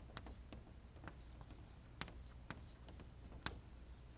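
Chalk writing on a blackboard: faint, irregular taps and scratches of the chalk stick as a heading is written out.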